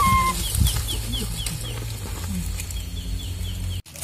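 A held bamboo flute note ends about a third of a second in. Then chickens cluck, with repeated high falling peeps at about four or five a second. The sound drops out briefly just before the end.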